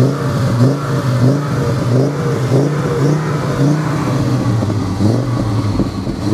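Audi Urquattro's five-cylinder turbo petrol engine (WR) idling steadily, heard from the cabin. It has a deep, sonorous five-cylinder note with a turbocharger whistle over it, the mixture set to 2.5% CO.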